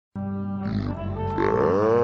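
SpongeBob SquarePants's cartoon voice, made deep and distorted by audio effects, held as a long drawn-out vocal sound that glides upward in pitch about one and a half seconds in.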